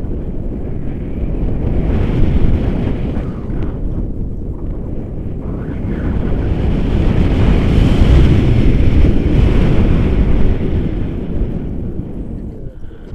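Wind rushing over the microphone of an action camera held out from a paraglider in flight, a loud low rumbling noise that swells in the second half and eases near the end.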